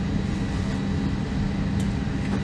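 Steady hum of an Airbus A321's cabin air conditioning with the airliner parked at the gate: a constant even drone with one level low tone, and a brief click near the end.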